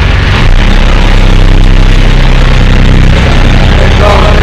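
A small boat's motor running steadily and loudly.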